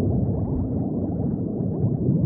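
Underwater recording of a dense, continuous stream of bubbles: many short bubble sounds overlapping over a deep underwater rumble.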